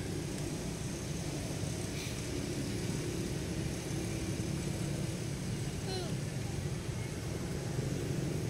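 Steady low rumble, with a single short falling squeak about six seconds in.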